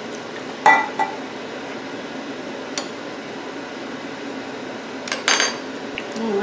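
Wire whisk beating an oil-and-vinegar dressing in a glass measuring cup: a steady swish of liquid, with the whisk clinking against the glass a few times and a louder run of clinks near the end.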